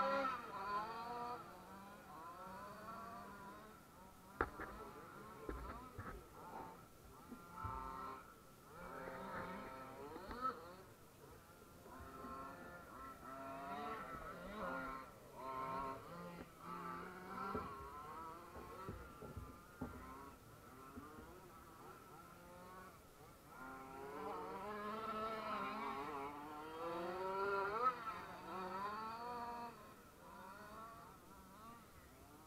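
Small radio-controlled off-road cars buzzing around a dirt track, their motor pitch rising and falling as they accelerate and slow, louder for a few seconds near the end. A single sharp click about four seconds in.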